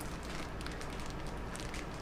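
Faint crinkling and rustling of a plastic bag of sterilised sawdust spawn, vacuum-tight after cooling, as it is handled and turned over in the hands.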